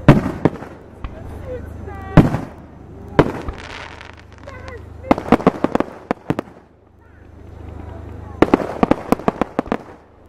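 Aerial firework shells bursting: a loud bang at the start, two more about two and three seconds in, then two runs of rapid crackling pops, one about five seconds in and one near the end.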